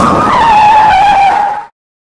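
Loud tyre screech of a car skidding: one squealing tone that sags slightly in pitch, then cuts off suddenly a little over a second and a half in.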